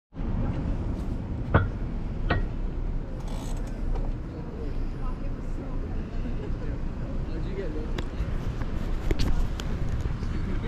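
Steady low rumble of street traffic, with a few sharp clicks.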